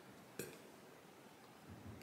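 Near silence: room tone, with one faint, short click about half a second in.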